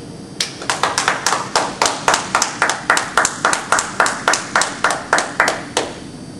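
A small audience clapping, with distinct, evenly spaced claps about four a second, starting about half a second in and stopping just before the end.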